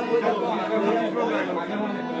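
Indistinct chatter of several voices talking at once, with no music playing.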